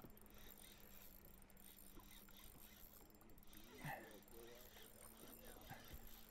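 Near silence: a faint steady hum, with a brief muttered voice about four seconds in.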